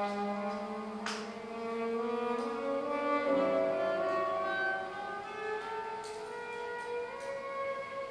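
Solo violin, amplified, playing slow sustained notes, often two at once, with gliding slides between pitches. There is a sharp click about a second in.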